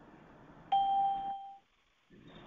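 A single short ding: one clear, steady tone that starts suddenly and dies away within about a second. Then the sound cuts to dead silence.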